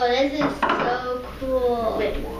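Metal spoons clinking and scraping against ceramic bowls, with a voice over it in two short stretches.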